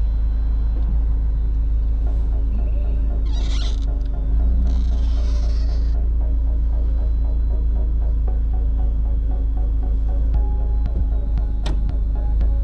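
Power-operated soft top of a Mercedes-Benz CLK 230 Kompressor (W208) cabriolet folding down into its well over a steady low rumble. There are two short hissing bursts about three and five seconds in as the top and its cover move, and a click near the end.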